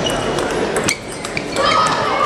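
Table tennis rally: a plastic ball struck back and forth, with several sharp clicks of bat on ball and ball bouncing on the table, over voices in the hall.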